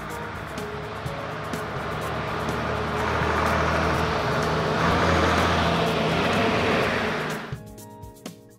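A motor vehicle engine sound effect that swells louder over several seconds and then cuts off abruptly about seven and a half seconds in. Background music plays underneath it.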